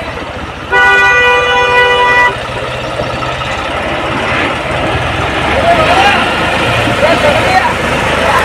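A vehicle horn sounds once, a steady multi-note blast lasting about a second and a half, over the low, steady running of tractor engines.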